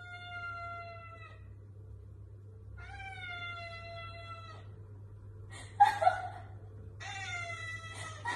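Tabby cat meowing in long, drawn-out calls, each held for over a second, with a brief louder sound between the last two.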